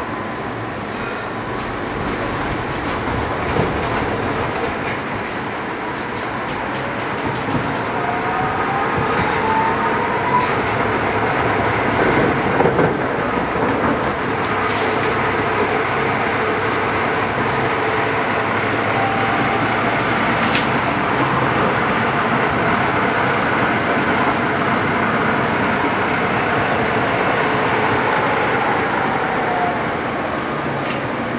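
Interior running noise of a Tatra T3 tram on the move: a steady rumble of wheels and car body on the rails. About a third of the way in, a motor whine rises in pitch as the tram picks up speed. Near the end, a whine falls in pitch as it slows.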